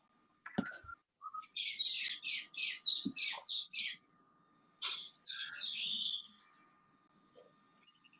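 A bird chirping faintly: a quick run of about eight short high notes, roughly three a second, then a few more calls about a second later.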